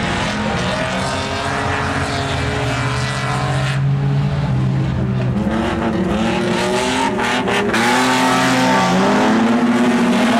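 Several speedway saloon cars racing on a dirt oval, their engines rising and falling in pitch as they accelerate, lift off and pass.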